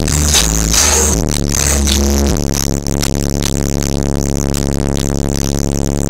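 Bass-heavy electronic music played very loud through a car stereo's single DC Audio XL M2 15-inch subwoofer on a 2,000-watt Crescendo amplifier, heard inside the car's cabin. The deep bass notes change several times in the first couple of seconds, then hold steady.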